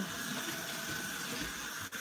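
Water running steadily from a bath tap, an even hiss.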